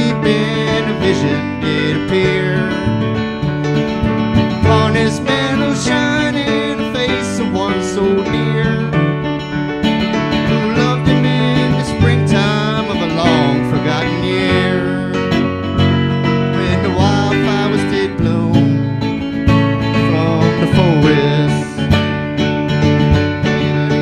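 Acoustic guitar and electric keyboard playing an instrumental break of a slow folk song, with held chords and low sustained bass notes under the guitar.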